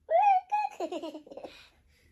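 A young girl laughing: a run of high-pitched giggles, loudest at the start, dying away after about a second and a half.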